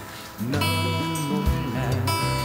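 A guitar string is plucked about half a second in and left ringing, sounding a single note so the pedal tuner can read its pitch.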